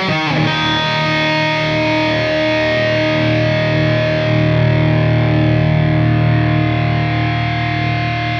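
Les Paul-style electric guitar played through a Line 6 Helix modelling a Suhr Badger 35 amp on its gain snapshot: a distorted chord struck just after the start and left to ring, sustaining steadily.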